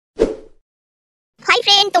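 A single short thud-like sound effect that hits once and dies away within half a second, followed by dead silence before a voice starts speaking near the end.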